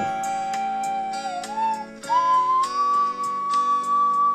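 Slide whistle playing a melody over a backing music track with light, regular percussion. It holds a note that dips and wobbles, then about halfway through steps up to a higher note that rises slightly and holds.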